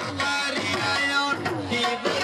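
Loud Punjabi folk music of the goon mahiye style: a gliding melody line over drum accompaniment, with no break.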